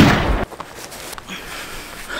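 A single gunshot sound effect: one loud bang at the very start that dies away within about half a second, leaving a faint hiss.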